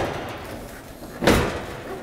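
Oven door hinge arms being fitted back into their slots in the range frame, giving one short metal clunk a little over a second in.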